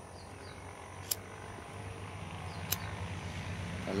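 A handheld lighter clicked twice, about a second and a half apart, over quiet steady background noise, with a low rumble building toward the end.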